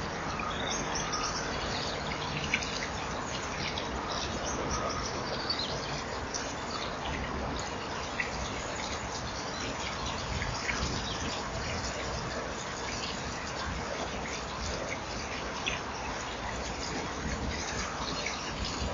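Faint, short bird chirps scattered over a steady hiss of outdoor background noise.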